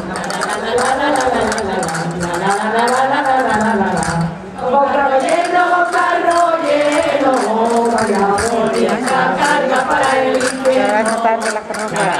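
Singing of a manchegas folk dance tune, the melody rising and falling in long sung phrases with a short break about four seconds in, and sharp percussion clicks keeping a steady rhythm throughout.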